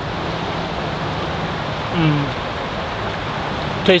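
Steady rushing of a flowing river. A short hummed "mm" falls in pitch about halfway through.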